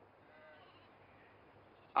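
Faint sheep bleating from a flock in the background, one short call about half a second in, over a low steady hiss.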